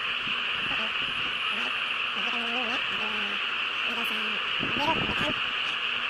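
A steady, unbroken high drone of an insect chorus. Faint voices come and go behind it.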